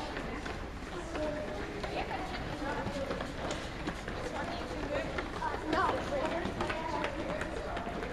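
Footfalls of a group of children jogging on a gym floor, an irregular patter of many steps, with the children chattering as they run.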